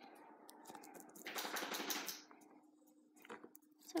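Faint scraping and crackling as a small knife and fingers work the skin and membrane away from a rabbit's skull, with a short burst of fine crackle about a second and a half in.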